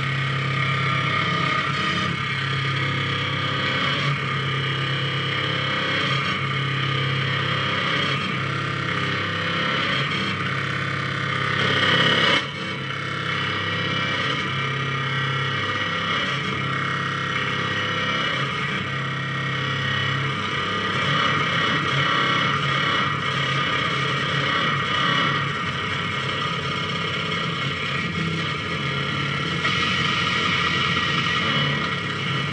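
Electronic noise improvisation from small patch-cabled synthesizer modules and effects boxes: a dense, distorted wall of noise over a steady low drone. It swells about twelve seconds in, then drops back suddenly.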